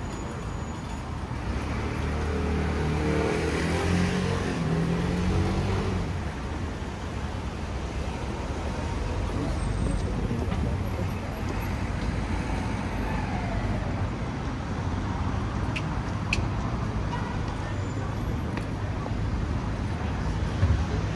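City street traffic: car engines running and passing close by over a steady hum of traffic, loudest a couple of seconds in.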